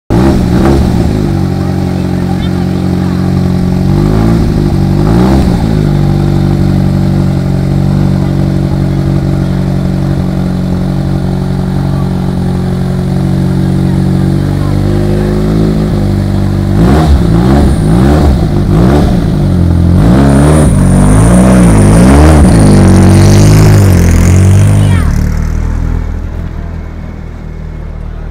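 Alfa Romeo 155 GTA race car's turbocharged four-cylinder engine idling with a lumpy beat, blipped twice early on and again later, then revved hard several times in quick succession. It holds higher revs as the car pulls away, and the sound fades in the last few seconds as it drives off.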